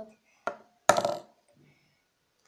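Two sharp knocks about half a second apart, the second louder with a brief ringing tail, like things being set down or bumped on the tabletop close to the microphone.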